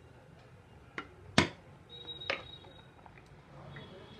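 Two sharp knocks, a light one about a second in and a much louder one half a second later, typical of a wooden spoon striking a steel cooking pot. About two seconds in comes a short high-pitched beep with a click.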